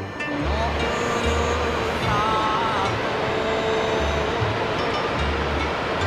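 Steady rush of water falling over a broad, tiered waterfall, with background music playing underneath.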